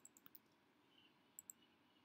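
Faint computer keyboard keystrokes, a quick run of typing in the first moments, then two sharp clicks close together about one and a half seconds in.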